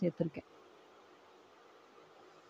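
Faint steady hum in the background.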